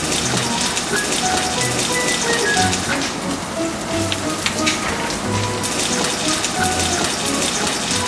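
Tofu and vegetable patties frying in oil in a nonstick pan over medium heat: a steady sizzle with scattered pops and crackles.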